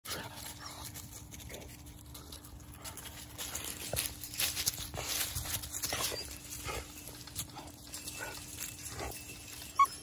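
Dogs making short, soft noises close by at a chain-link fence, a few at a time, busiest in the middle, with a few sharp clicks and a faint steady hum underneath.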